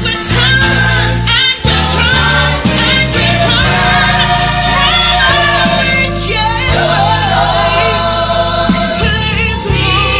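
Music: a Christian song, with singing voices that waver in pitch over steady, sustained low accompaniment.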